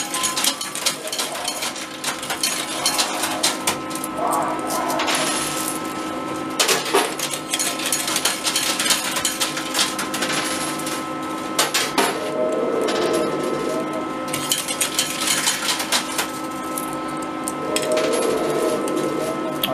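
Coins clinking and clattering on the metal playfield of an arcade coin pusher machine as they are dropped in, a run of many sharp small metallic clicks, over a steady electrical hum.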